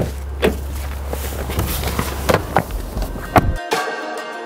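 Irregular knocks and thumps of a person reaching the car and handling its door, over a steady low hum. The hum cuts off suddenly near the end as music comes in.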